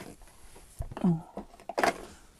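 Hands handling craft supplies on a table: a sharp knock at the start, a soft low thump, and a short clatter near the end as things are picked up or set down. A brief spoken "Oh" comes in between.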